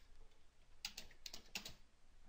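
Faint computer keyboard typing: a quick run of keystrokes starting a little under a second in.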